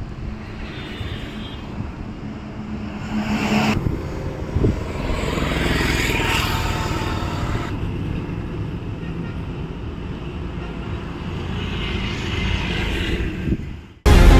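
Roadside outdoor sound of vehicle and wind noise, in three short edited segments, with a low steady hum in the first and a brief thump about five seconds in.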